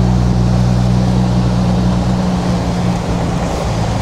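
Jeep Gladiator's engine running steadily as it drives over loose beach sand, a low, even hum with wind rush over it.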